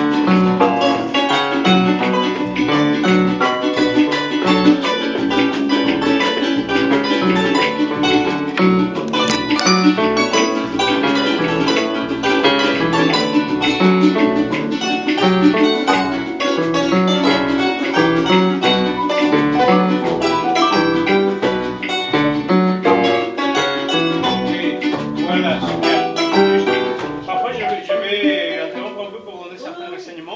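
Harp and Venezuelan cuatro playing an instrumental together in a steady, cumbia-like rhythm, with a regular repeating bass line under plucked chords and melody. The music fades out near the end.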